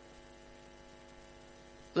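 Faint, steady electrical hum, a stack of even tones that stays level throughout.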